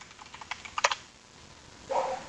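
Computer keyboard typing: a quick run of keystrokes in the first second, ending in one louder click, then quiet.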